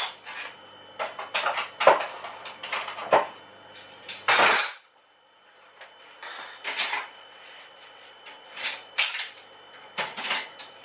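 Dishes and cutlery clinking and clattering as they are handled and put away, with a longer rattle about four seconds in, a short lull, then more clinks. A faint steady high whine runs underneath.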